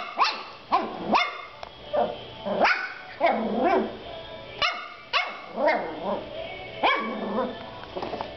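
A young puppy barking over and over in short, high barks, about two a second, each dropping in pitch: a pup just finding his voice.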